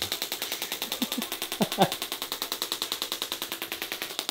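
Radial shockwave therapy applicator firing a fast, even train of clicks against the body. A short laugh or grunt from the patient comes about a second and a half in.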